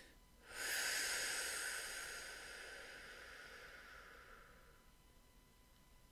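A woman's long, slow breath, starting about half a second in and fading away over about four seconds.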